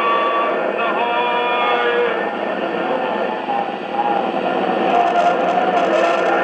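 A 1940s tube radio with an RCA Victor 45X1 chassis playing the opening of an old-time radio drama through its speaker: sustained tones, held and stepping lower in pitch every second or two.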